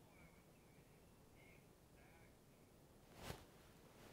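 Near silence: studio room tone with a few faint, short high chirps in the first half and a single brief knock a little past three seconds in.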